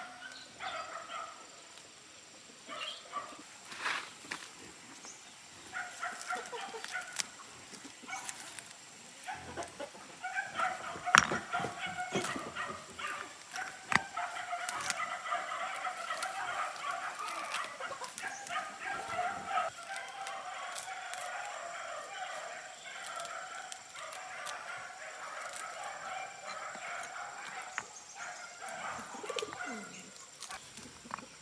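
Chickens clucking and calling, off and on at first and then steadily through the second half, with short rustles and snaps of grass being pulled up by hand from between paving stones.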